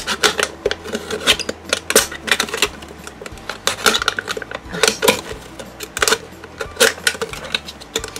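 A box-cutter blade sawing and stabbing through the thin aluminium wall of a drink can, giving a rapid, irregular run of sharp metallic clicks and scrapes.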